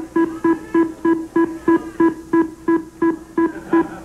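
The Price is Right's Big Wheel spinning, its pegs flicking past the pointer in a steady run of pitched clicks, about three a second.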